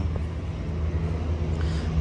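An engine idling: a steady, unchanging low rumble.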